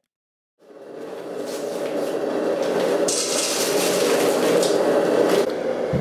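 Camping stove burner running with a steady rushing hiss, fading in after about half a second of silence.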